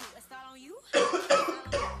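A person coughing twice, two short harsh coughs about a third of a second apart, from a dry throat.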